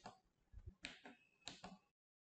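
Faint clicks of a small breadboard tactile push button being pressed, three short clicks about half a second apart.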